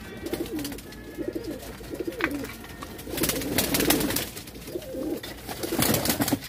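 Several long-legged fancy domestic pigeons cooing, low wavering coos repeating and overlapping throughout. A louder spell of clicks and rustling comes about three seconds in and again near the end.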